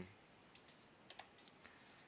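A handful of faint, irregular computer keyboard clicks over near-silent room tone.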